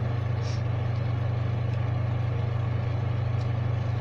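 A steady low hum, constant in pitch and level, with a faint brief click about half a second in.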